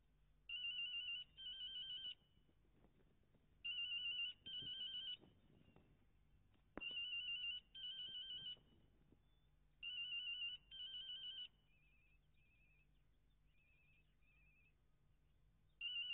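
Mobile phone ringing with a warbling double-ring tone: four rings about three seconds apart, each a pair of short trills. These are followed by four short, fainter beeps, and the ring starts again at the very end. The call is going unanswered.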